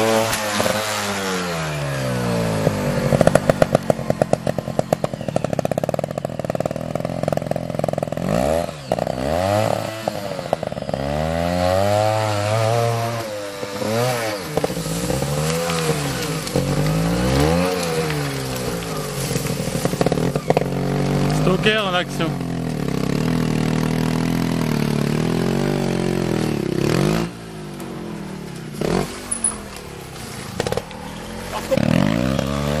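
Trials motorcycle engine revving up and down in repeated quick blips of the throttle, with a cluster of sharp clicks a few seconds in. The engine drops lower and quieter near the end.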